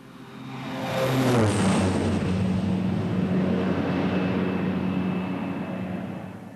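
A plane's engines droning as it flies in low over an airstrip. The sound swells over the first second or so, its pitch drops, and then it holds steady before easing off near the end.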